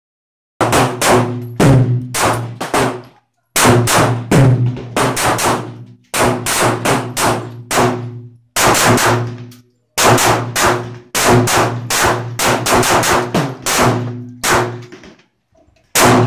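Taurus 738 .380 pocket pistol firing a rapid series of shots, about three to four a second, in strings with brief pauses between them. Each report rings out and trails off under the range's roof.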